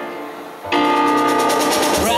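Stage keyboard playing the chords of a Christmas song's intro: one chord fades away, then a fuller chord is struck about two-thirds of a second in and held, with faint fast ticking above it.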